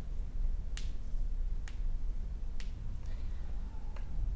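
Three finger snaps, evenly spaced a little under a second apart, over a steady low hum.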